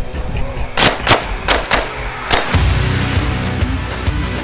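Five pistol shots in quick succession, the first about a second in and the last about two and a half seconds in, over rock music that drops back during the shots and returns in full afterwards.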